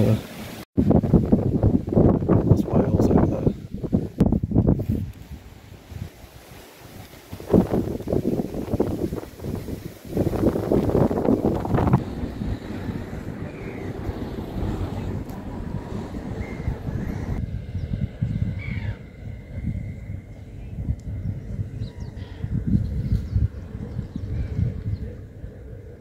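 Wind buffeting the microphone in irregular gusts, surging and easing.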